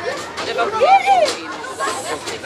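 People talking, with chatter from a group of voices around; one high voice rises and falls about a second in.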